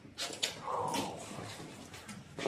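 A person's voice: a short hiss, then a brief wavering, whimper-like sound.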